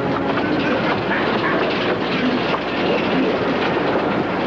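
Subway train running, heard from inside the car: a steady, dense rattle and rumble.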